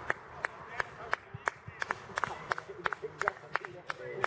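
A few people clapping hands, scattered claps out of step, about three or four a second, over faint voices.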